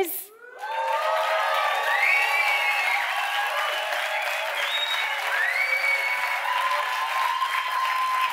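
A small seated theatre audience of about 118 people clapping and cheering, with many overlapping whoops, starting about half a second in. It is a fairly modest response, which the host finds not loud enough.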